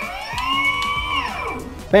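Brushless electric skateboard motor whining as the newly paired remote spins it up, holding, then winding back down about a second and a half in.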